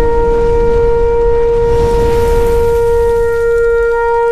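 A shofar blast held on one steady note, over a low rumbling whoosh.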